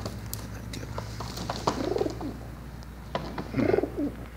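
Racing pigeons cooing in a plastic carrying crate: two low, rolling coos, one in the middle and one near the end.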